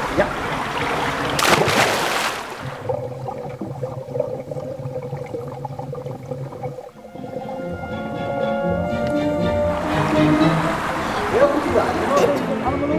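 A child diving into a swimming pool: splashing water with one big splash about a second and a half in. Then calm background music with held notes while she is underwater, and splashing water again near the end as she surfaces.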